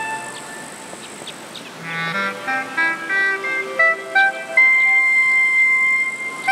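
Solo clarinet heard in a natural echo. For the first couple of seconds the echo of the last phrase fades out. Then a quick run climbs from a low note into a short melody and ends on a long held high note about four and a half seconds in.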